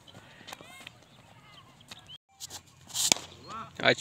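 Faint voices of players calling out across an open field. About halfway the sound briefly cuts out. Near the end a cricket bat strikes a tape-wrapped tennis ball with a single sharp crack, amid shouting.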